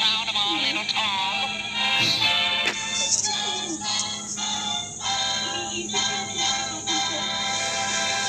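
End-title music of an old Columbia cartoon: a few gliding notes at the start, then sustained orchestral chords that change about once a second.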